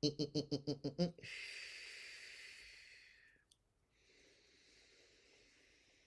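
A man laughing in a quick burst of about eight short pulses, followed by a long breathy exhale that fades away over the next two seconds, then a fainter breath.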